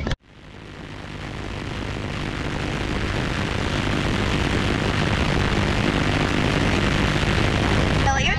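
Faulty recording audio: a loud, even static-like rushing noise with no voices in it. It cuts out for an instant near the start, then swells up over the next few seconds and holds steady.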